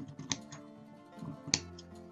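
Fabric scissors snipping through satin ribbon: two sharp cuts about a second apart, over soft background mandolin music.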